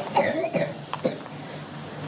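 A man's short throat-clearing cough near the start, followed by a faint click about a second in.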